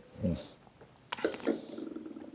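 A hummed 'mmm', then Malbec being slurped and swished around the mouth while tasting, with a short run of wet clicks about a second in.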